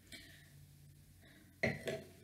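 A person sipping red wine from a stemmed glass: mostly quiet, with a short louder sound near the end as the glass comes away from the mouth.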